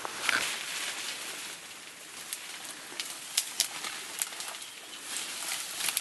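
Leaves and stems rustling and snapping as a mountain gorilla handles the vegetation it sits in, with a few sharp cracks around the middle; a bird calls in the forest as well.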